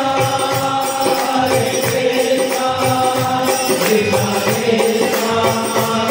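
A group singing a devotional chant together, with steady rhythmic hand-clapping and a regular low beat keeping time.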